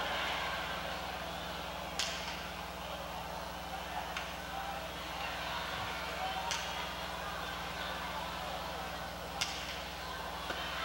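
Jai-alai pelota cracking against the fronton walls during a rally: three sharp cracks, about two seconds in, about six and a half seconds in and near the end, plus a fainter one about four seconds in, each ringing briefly in the hall. A steady low hum lies underneath.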